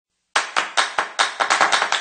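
Sharp clap-like percussion hits starting about a third of a second in, about five a second at first and quickening to about ten a second near the end, the opening of an electronic intro jingle.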